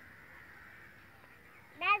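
A crow caws once near the end, a loud arched call, against a faint steady background.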